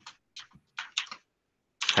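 Typing on a computer keyboard: a few quick bursts of keystrokes over the first second or so, then a pause.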